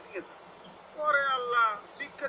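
A cat meowing once, about a second in: a single drawn-out, wavering cry that slides slightly down in pitch.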